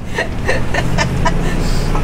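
In the cab of a moving Class C motorhome, its Ford 7.3-litre Godzilla gas V8 and the road give a steady low hum. Over it is soft, short chuckling laughter, about four bursts a second in the first half.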